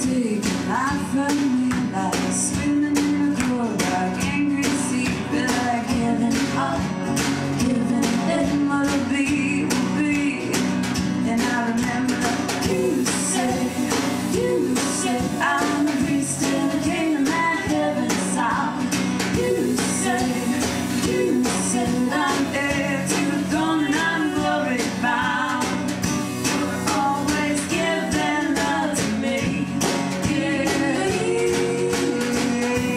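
Live song: a woman singing over a strummed acoustic guitar, with a steady beat.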